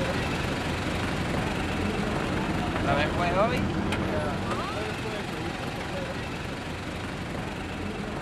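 An SUV's engine running steadily at low speed as it tows a boat trailer past, easing off slightly toward the end. Faint voices talk a few seconds in.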